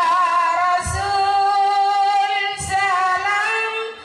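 A woman singing solo into a handheld microphone, holding one long note that wavers slightly in pitch and breaks off just before the end.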